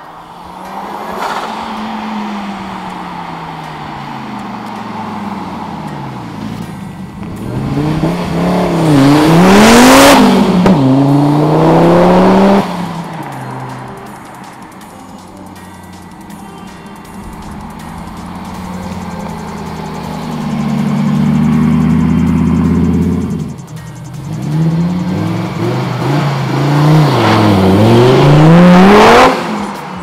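Audi urS4's turbocharged 2.2-litre AAN five-cylinder at full throttle, running hard past twice with the revs climbing and dropping back at each upshift. Each run is loudest as the car goes by, then drops away suddenly.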